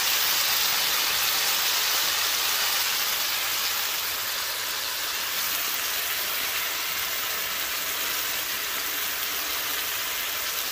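Lamb chops searing in hot oil in a nonstick frying pan: a steady sizzling hiss that eases off a little partway through.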